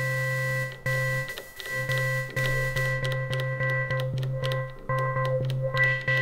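Elektron Digitone FM synthesizer playing a sustained low note with a few bright overtones above it, stopped and retriggered about five times with short breaks.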